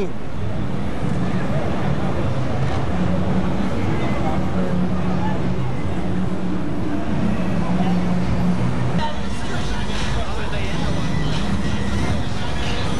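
Slow street traffic: car engines running as cars roll past and idle, mixed with the voices of people talking nearby.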